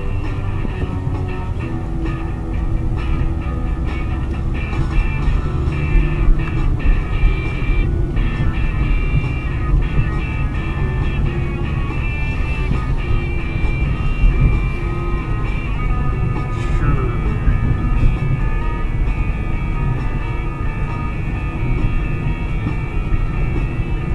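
Rock music with a steady beat, heard over the steady low rumble of a car driving on the road.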